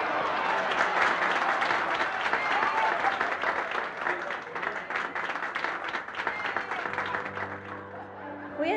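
A crowd of people clapping and applauding, with voices mixed in. The clapping thins out toward the end, and music comes in near the end.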